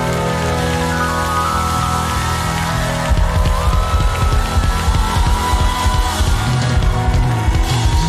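Instrumental passage of a live worship band: sustained keyboard-like chords, with a steady low beat from bass and drums coming in about three seconds in.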